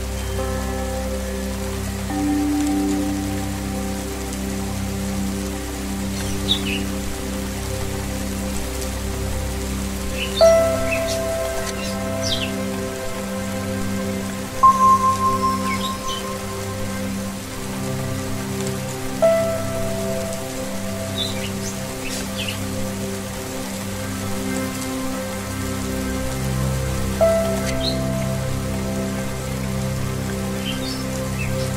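Steady rain falling on a wet surface, mixed with slow zen meditation music: long held tones with a few struck, ringing bell-like tones that fade out slowly. Birds chirp briefly, several times, over the top.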